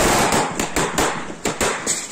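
Firecrackers going off: a hissing burst, then a quick irregular string of sharp bangs, several a second.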